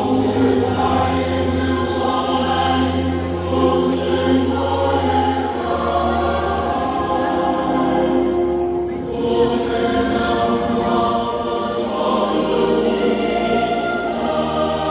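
Choir singing in long held chords.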